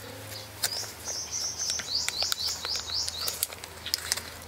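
A small bird calling: a high held note about a second in, then a quick run of about six falling chirps, about four a second.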